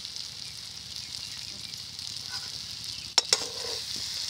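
Masala and vegetables sizzling steadily in a metal kadhai. A little after three seconds in, a metal spatula clicks sharply against the pan twice as stirring begins.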